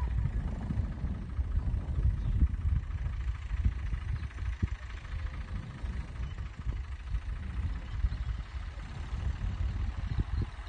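Tractor engine working under load as it pulls a ridging plough across ploughed soil, heard from well down the field as an uneven low rumble.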